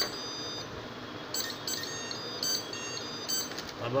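Electronic beeps from an RFID motorised door lock's buzzer: short high-pitched beeps in a few brief groups about a second apart, as RFID cards are held to its reader in card-delete programming mode, acknowledging each card being deleted.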